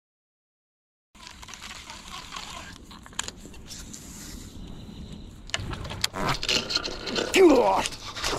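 About a second of dead silence, then quiet outdoor noise on the water with a few sharp knocks, building into a man's excited voice over the last two seconds.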